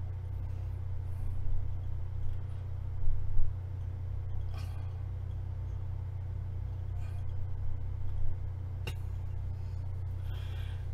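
A steady low hum, with a few faint brief sounds and a sharp click near the end.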